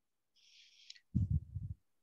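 A faint hiss, then a brief low, muffled pulsing through a call participant's microphone, like breath or handling noise on the mic.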